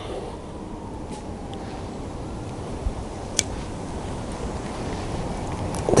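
A steady low outdoor rumble, with one sharp click about halfway through as a bonsai root cutter snips a root, and a few fainter ticks before it.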